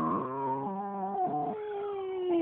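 An animal's long, drawn-out cries, each held for a second or more, wavering and sliding down in pitch as one call runs into the next.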